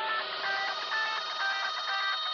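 Intro music: a quick run of short high notes changing pitch about four times a second, over a held chord, with no drums.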